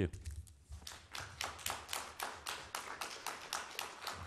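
Light, steady hand clapping, about five claps a second, quieter than the speech around it, starting about a second in after a closing "thank you".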